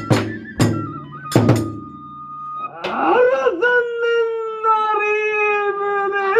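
Kagura accompaniment: a few drum strikes over a held note from a transverse flute, the drumming stopping about one and a half seconds in. From about three seconds in, a performer's voice takes over with one long, drawn-out chanted line.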